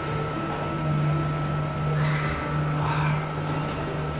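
Glass passenger lift travelling down, giving a steady low hum.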